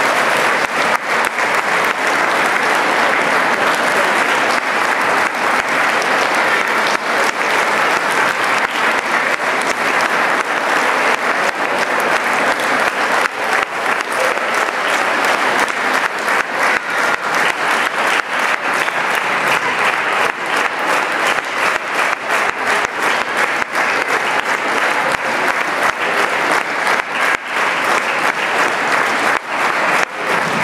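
Audience applauding steadily for a long time; in the second half the clapping thins a little and single claps stand out more.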